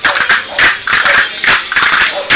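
Murcian jota music playing, with castanets clicking sharply in time about three to four times a second.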